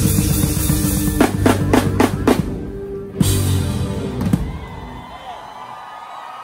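Live rock band ending a song: the drum kit plays a quick run of five hits with the band, then one last accent about three seconds in, whose Paiste cymbals ring on and fade away.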